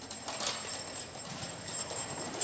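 A stage curtain opening: a run of light, irregular clattering knocks, with a steady high-pitched whine running under them.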